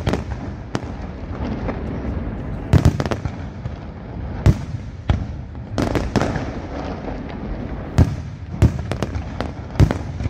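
Professional aerial fireworks display: sharp bangs from bursting shells about once a second at irregular intervals, over a continuous crackle and rumble from many effects firing together.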